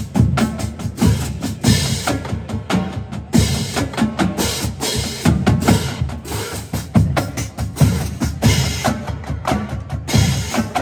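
Marching band drumline playing: a row of snare drums with bass drums and hand cymbals, a fast, driving pattern of sharp strikes over heavy bass drum hits.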